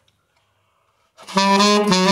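Yamaha 23 tenor saxophone: about a second of near silence, then a note comes in and is held steady, the opening of a run up and down the horn.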